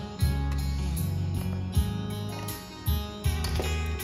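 Background music with guitar, running steadily, with a few short sharp hits.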